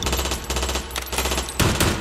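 Instrumental break of a K-pop/hip-hop track: rapid volleys of sharp, machine-gun-like percussive hits over a steady, bass-boosted low end. The mix is processed as 8D audio.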